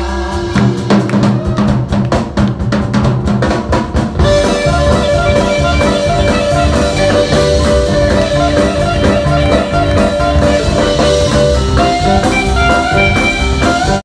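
Live rock band playing loudly: for about the first four seconds the drums hit a steady run of strokes, then electric guitar and bass balalaika come in over the beat with sustained notes.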